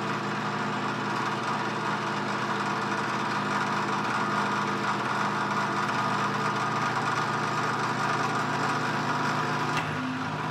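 Drill press running with its bit cutting into a hardened steel file: a steady motor hum under the continuous noise of the cut. A short click comes just before the end.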